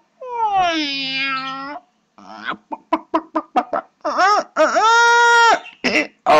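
Cartoon animals singing badly, as a string of animal calls: a long falling call, then a quick run of short yelps, then a long held call near the end.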